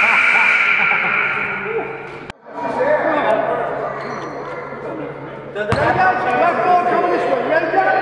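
A basketball being dribbled on a gym floor, with voices echoing in the hall. A steady ringing tone fades out over the first two seconds, and the sound drops out abruptly just after two seconds in.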